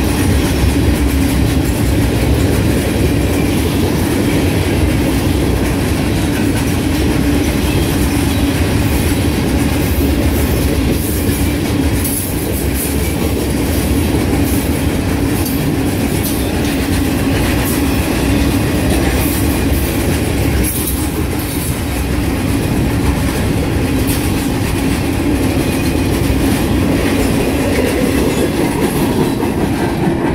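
Freight train of open hopper cars rolling past, steel wheels clacking over the rail joints with a steady rumble. Brief high-pitched wheel squeals come and go around the middle.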